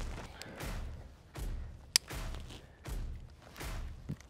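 Climbing rope of a lineman belt being handled against a tree trunk: several soft swishes and scrapes as it is passed around, with one sharp click about two seconds in.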